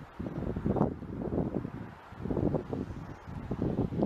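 Wind buffeting a handheld camera's microphone: low, irregular gusts of noise that swell and drop every second or so.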